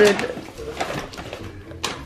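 A woman's voice trailing off at the very start, then a few faint clicks and light knocks.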